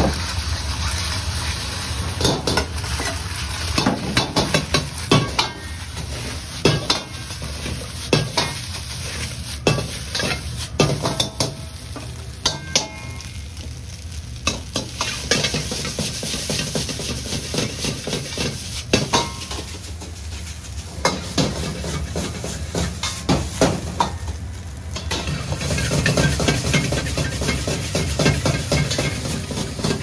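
Fried rice stir-fried in a hot carbon-steel wok: egg and rice sizzle in the oil while a metal ladle scrapes and knocks against the wok again and again. A steady low rumble from the gas wok burner runs underneath.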